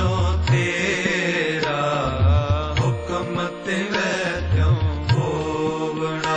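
Sikh kirtan: a devotional hymn sung over steady held harmonium chords, with a tabla keeping a regular beat.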